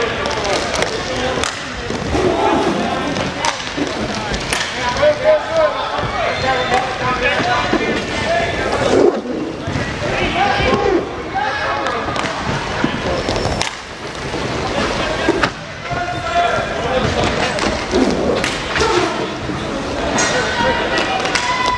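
Indoor inline hockey play: voices of players and spectators calling out, with scattered sharp clacks of sticks and puck and the roll of inline skate wheels on the rink floor.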